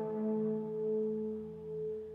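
Electric guitar note ringing out through the amplifier, held steady and slowly fading as its upper overtones die away.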